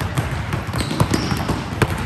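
A basketball bouncing on a gym floor: a few sharp bounces, about a second in and near the end, over a steady wash of crowd noise.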